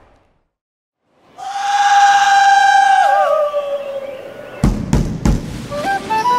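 Traditional Andean folk dance music starting up: a long held flute note that dips lower about three seconds in, then drum beats come in near the end.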